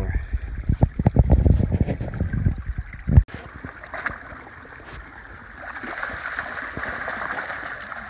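Small creek's water rushing over a shallow riffle, building up and holding steady through the second half. Before it come about three seconds of loud low rumbling and thumping, which stop abruptly.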